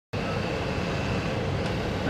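Steady hum and rushing air of HVAC equipment running, with a faint high whine that fades out near the end.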